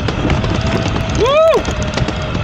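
All-terrain electric skateboard rolling over asphalt on pneumatic tyres: a steady rumble of wheels and wind with a faint steady whine. A short voiced "whoa" rises and falls in pitch about a second in.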